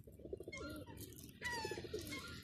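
Feral pigeons cooing, two short pulsed coos, the second in the latter half, with higher falling calls from another bird over them.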